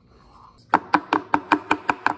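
A tiny metal cake tin full of batter tapped repeatedly against the counter to knock out air bubbles: a quick run of about eight sharp, slightly ringing taps, about six a second, starting near the middle.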